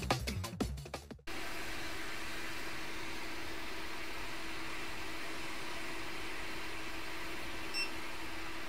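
Electronic music fades out in the first second. It is followed by a steady rushing hiss with a faint low hum from a JBC hot air rework gun blowing onto a chip, heating its solder pins until they melt.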